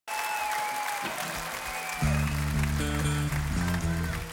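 Concert crowd cheering and whistling. About two seconds in, the band comes in loud with low sustained electric notes that change pitch a few times over the crowd noise.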